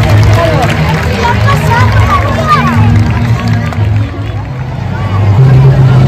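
Music with a stepping bass line over the chatter of a large crowd of schoolchildren; the bass gets stronger near the end.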